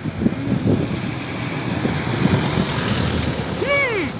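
Wind buffeting a phone microphone outdoors: a steady, rough rumbling noise. Just before the end there is a short hummed sound from a person, rising and falling in pitch.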